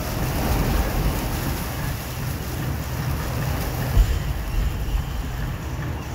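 Steady wind noise on the microphone, a low rumble, with one short thump about four seconds in.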